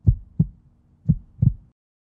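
Heartbeat sound effect: two low lub-dub double thumps about a second apart, over a faint steady hum, stopping shortly before the end.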